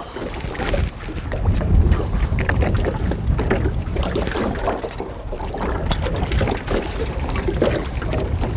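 Wind buffeting the microphone in a steady low rumble, with water lapping and small splashes at the side of a small boat as a peacock bass is lowered back into the water.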